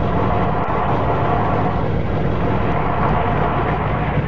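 Industrial noise music: a dense, steady wall of noise, heavy in the low end, with a faint held tone running through it.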